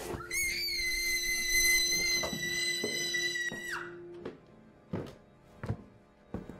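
Horror film score: a sustained, piercing high tone over a lower steady drone, the high tone sliding down and cutting off after about three and a half seconds. Then slow footsteps on a wooden floor, a knock every second or less, from about five seconds in.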